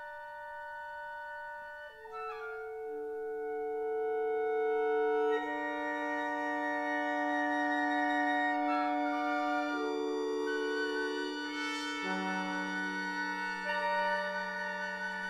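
Chamber ensemble of strings and winds playing a slow instrumental passage of contemporary classical music: long held notes overlap and thicken into a sustained chord, with new notes entering about two seconds in and a low note added near the end.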